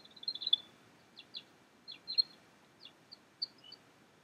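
Birds chirping faintly: a scatter of short, high chirps and quick twitters, irregularly spaced.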